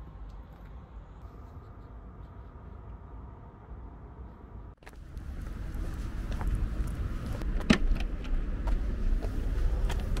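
A low steady hum for the first half, then, after a sudden break, louder road traffic rumbling past in a car park, with scattered clicks and one sharp tick about three-quarters of the way through.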